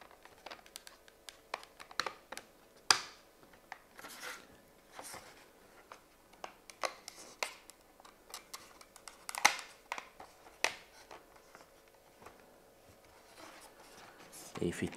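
Hard plastic parts clicking and scraping as a white plastic cover is pressed and snapped onto the housing of a small cog mechanism. The clicks and short scrapes come irregularly, the sharpest about three seconds in and again near the middle.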